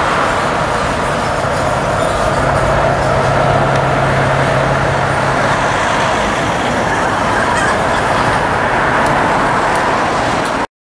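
Steady, loud road traffic noise, with a low engine hum for a few seconds in the middle.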